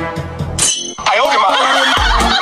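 Music, cut a little over half a second in by a sudden crash like glass shattering, then a louder, busier stretch of sound.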